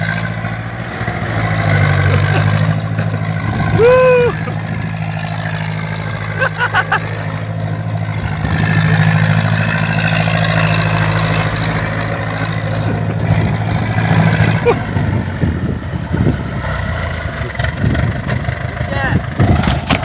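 Ursus C-360 tractor's four-cylinder diesel engine running hard as the tractor is thrown round in tight turns on dry stubble, with a steady engine note that turns rougher and uneven after about fourteen seconds. A short rising-and-falling call cuts in about four seconds in.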